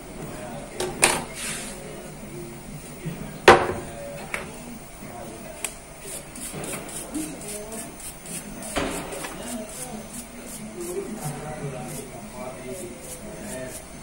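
A stiff brush scrubbing an Android box circuit board in quick, even strokes, several a second, cleaning it after new parts have been soldered on. Before the brushing there are a few knocks from handling the board, the loudest a sharp knock about three and a half seconds in.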